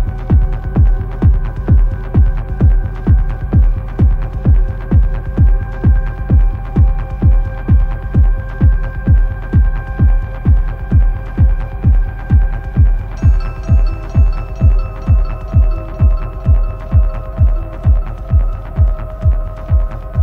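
Hard techno: a steady four-on-the-floor kick drum at a little over two beats a second under sustained synth chords. About 13 seconds in, the chords change and a repeating high synth figure comes in.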